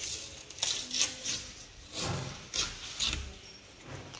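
Footsteps scuffing on a tile floor: about five short, irregular shuffles, with a soft low thud about three seconds in.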